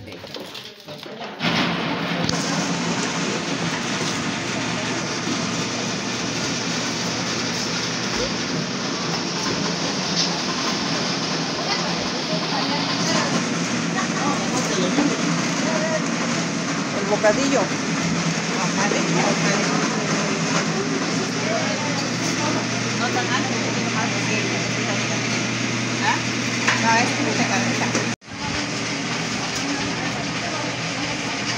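Indistinct chatter of many people talking at once, steady throughout, cutting out briefly near the end.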